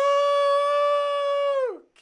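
A man's voice holding one long, high, steady sung note with no backing music; the note slides down and fades out near the end.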